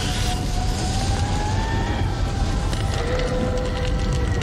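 Film soundtrack of a building fire: a steady low rumble of burning flames, with faint held music tones that drift slowly upward over it.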